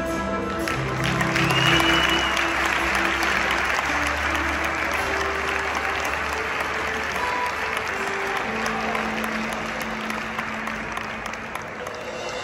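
Circus audience applauding over the act's backing music, the clapping swelling about a second in and thinning near the end. A brief high whistle sounds early in the applause.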